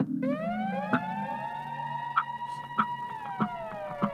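Electronic siren effect from a DJ's mix: one pitched tone slides up over about two seconds, holds, and slides back down from about three seconds in, over a steady ticking beat a little under twice a second. The bass notes of the music underneath cut out just as it starts.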